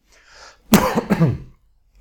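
A man clearing his throat: two quick loud bursts about a second in.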